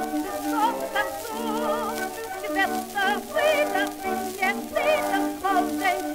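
Acoustically recorded 1920 Victor shellac disc of a Yiddish song for contralto and orchestra: a melody sung or played with a wide vibrato over held orchestral chords, thin in the bass, with a faint surface hiss.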